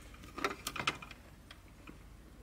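A few small clicks and rattles of a quick-disconnect spade connector being pushed onto the terminal of a 12-volt UPS battery. They come in a cluster about half a second to one second in, then two fainter ticks.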